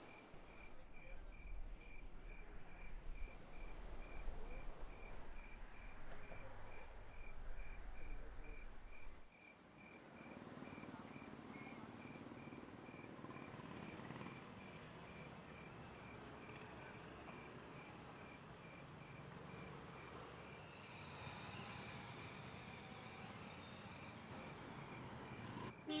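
Cricket chirping steadily, about three chirps a second. Under it a low rumble runs until it cuts out about nine seconds in, and a faint hum of distant traffic follows.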